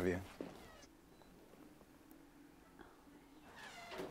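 The last word of a greeting, then about three seconds of near silence with a faint steady low hum, before voices start again near the end.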